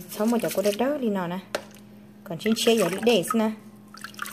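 A woman talking, with a quieter pause in the middle broken by a single short click. Faint sloshing of rice being stirred by hand in a basin of water.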